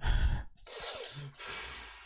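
A man breathing heavily, as if out of breath: a sharp puff of breath, then two long heavy breaths.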